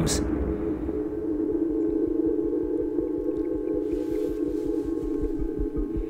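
Eerie trailer soundtrack: a sustained droning tone with a low, regular pulse underneath that quickens as it goes on.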